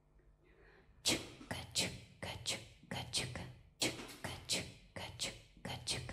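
A female singer's whispered, breathy vocal sounds, repeated as a rhythmic pattern of sharp hissy strokes about two to three a second and layered on a loop pedal. The pattern starts about a second in.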